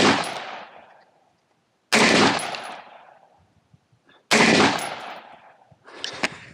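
Single rifle shots from an AR-style rifle fired slowly and deliberately: the fading tail of one shot, then two more about two and a half seconds apart. Each is a sharp crack followed by an echo that dies away over about a second. A few smaller sharp snaps come near the end.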